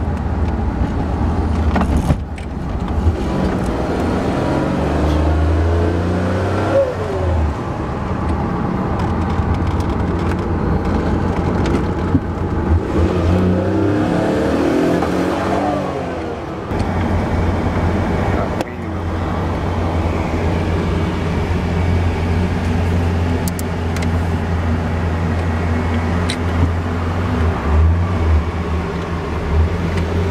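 Noble M400's twin-turbocharged 3.0 L Ford Duratec V6, mid-mounted behind the cabin, heard from inside the car while driving. The low engine note runs throughout, and its pitch climbs and drops twice: in the first quarter and again around the middle, as the car accelerates through the gears.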